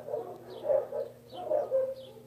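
A run of short animal calls in the background, repeating every few tenths of a second.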